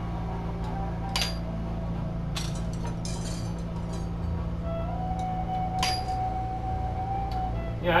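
Glass color rods snapped with disc nippers and set down clinking: a few sharp snaps and clicks over a steady low hum.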